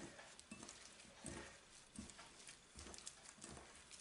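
Faint, irregular soft thumps and light ticks from a hand squeezing and pressing a crumbly flour, butter and cheese dough in a glass bowl.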